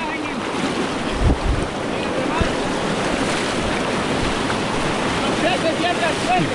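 Fast, flood-swollen river rapids rushing over boulders: a steady, loud whitewater rush. A few low thumps on the microphone come about a second in.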